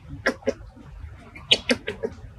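Baby macaque giving short squeaky whimpers and cries, two early and three in quick succession near the end, as it fails to get milk from its mother.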